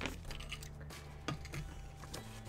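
A few soft crackles of paper being handled as a letter is unfolded, over a low steady hum.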